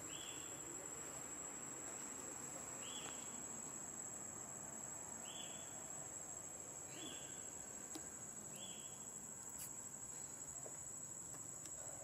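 A steady, high-pitched drone of insects in the trees, faint. Over it a short call sounds five times, a couple of seconds apart.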